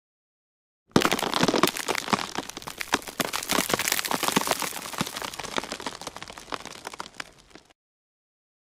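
Dense crackling and crinkling of a stiff costume coat being handled, starting abruptly about a second in and fading toward the end.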